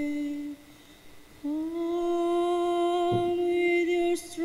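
Choir voices humming a slow hymn tune in long held notes, breaking off about half a second in and resuming with a slight upward slide into the next held note.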